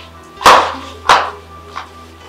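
Three sharp impacts about two-thirds of a second apart, the first two loud and the third fainter, over soft background music.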